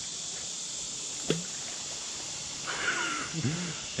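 Steady high chirring of crickets and other insects, with a single sharp click about a second in and faint voices near the end.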